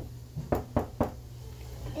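Knocking on a door: one sharp knock, then three quick knocks about a quarter second apart.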